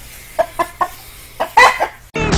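Rooster clucking: three short clucks about half a second in, then a louder run of clucks near the end.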